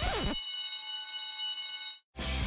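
School bell buzzing as one steady electric tone for about a second and a half, then cutting off abruptly: the bell marking the end of lessons.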